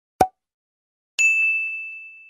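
A short dull thunk from a cartoon shovel-digging sound effect, followed a second later by a single bright ding that rings on and fades slowly.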